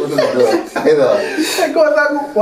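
Conversational speech with a chuckle of laughter in it.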